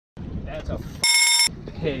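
A single short electronic beep about a second in, under half a second long, from the handheld digital scale the walleye hangs on as it registers the fish's weight.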